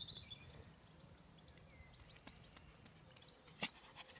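Near silence: faint outdoor ambience with a few faint, high, chirp-like sounds and one sharp click about three and a half seconds in.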